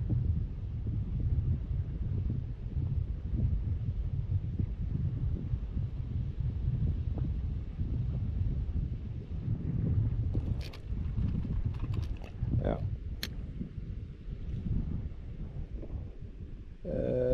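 Wind buffeting the microphone in a low, gusting rumble, with a few light clicks and taps in the second half.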